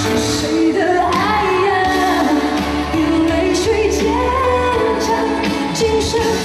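A woman singing a pop song live into a handheld microphone, her voice gliding through a held melodic line over steady instrumental backing with sustained chords and bass.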